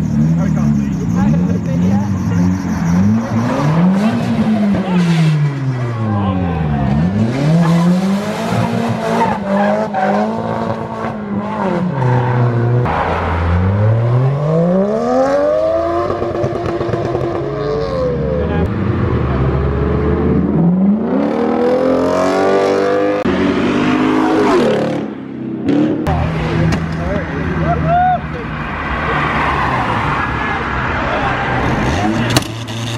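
Modified car engines revving hard, their pitch climbing and falling again and again as the cars pull away, with tyres spinning in a smoky burnout at the start. Crowd voices run underneath.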